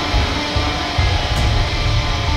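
An industrial remix of a black metal track: dense, loud distorted music with a pulsing low end.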